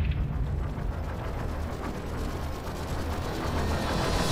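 Rapid, even mechanical ticking like a ratchet, over a low rumble, part of a documentary's soundtrack. A loud whooshing swell builds at the very end.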